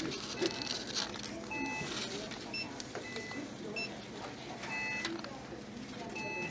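Short electronic beeps, each two high tones together, sounding roughly once a second over store background noise with indistinct voices.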